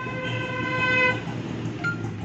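Samsung front-load washing machine's touchscreen control panel sounding a steady beep, a little over a second long, as the Child Lock setting is selected. A short, higher blip follows near the end.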